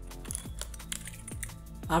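Typing on a computer keyboard: a run of irregular key clicks over background electronic music.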